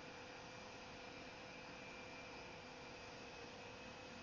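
Near silence: a faint steady hum and hiss of room tone.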